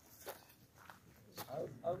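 Quiet outdoor lull with a couple of faint sharp knocks or clicks, then a man's voice starting near the end.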